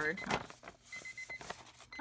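Digital timer alarm sounding rapid, high-pitched beeps as a timed countdown runs out, over light paper rustling and handling.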